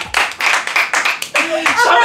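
A small group laughing hard and clapping their hands in a quick run of claps, several claps a second, with laughing voices over them.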